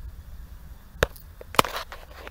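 A steady low rumble on the microphone, broken by two sharp knocks about a second in and half a second later, with a few lighter clicks around them.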